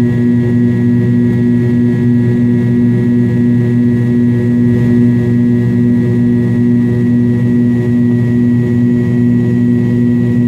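Cabin sound of a McDonnell Douglas MD-83 climbing after takeoff, its rear-mounted Pratt & Whitney JT8D engines running at steady power: a loud, even drone with a few steady tones in it.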